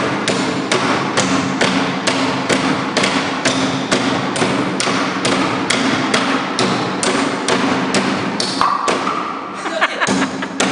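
Heavy Thai chopping knives striking pine boards in fast, repeated chops, about three a second, as two blades cut into the wood together. The chopping breaks off for a moment near the end, when a voice is heard.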